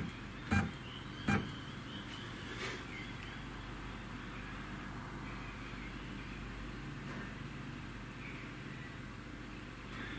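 Two short sharp clicks in the first second and a half, then a faint steady low hum.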